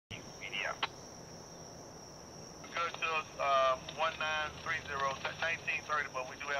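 Voice transmission over a railroad scanner radio, starting about three seconds in, over a steady high-pitched drone of insects.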